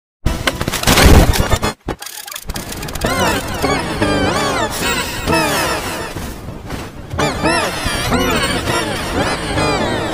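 A loud burst of noise that cuts off sharply just before two seconds, then a cartoon character crying, with wailing sobs that rise and fall over and over, pitch-shifted and distorted by video effects.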